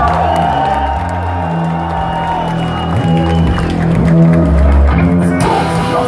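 Metal band playing live and loud: distorted electric guitars holding long notes over bass and drums, with a cymbal wash near the end.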